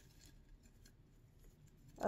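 Faint rustling of folded paper slips being picked through by hand in a cut-glass bowl, with a few soft ticks.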